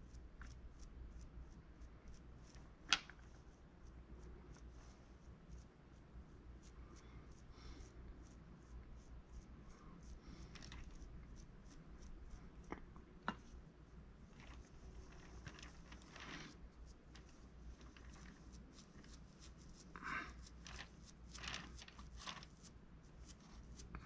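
Faint, soft dabbing and stroking of a small bristle brush wet with lighter fluid on an oil-based clay sculpture's face, smoothing the surface, with scattered small ticks and one sharper click about three seconds in.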